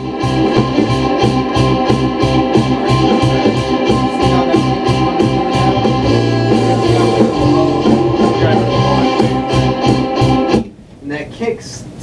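A multitrack song with a fast, even kick-drum beat under sustained keyboard chords, played back loud over studio monitors and stopping suddenly about ten and a half seconds in. Its kick drum is being EQ'd and still needs more click. A man starts talking just after it stops.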